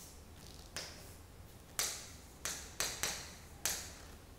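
Chalk tapping and scraping on a chalkboard as letters are written: about six sharp, separate taps of the chalk striking the board, spread over a few seconds.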